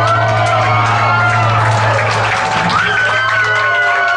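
Live rock band holding a final chord, a low sustained note ringing until it stops near the end, with whoops and shouts from the crowd over it.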